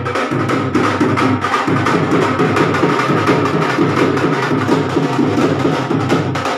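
Live drumming on a double-headed barrel drum, struck in a fast, steady rhythm.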